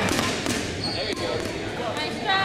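Rubber dodgeballs bouncing and knocking on a hardwood gym floor as players rush forward, with a few sharp knocks in the first half-second and a brief high squeak about a second in, in an echoing gym hall.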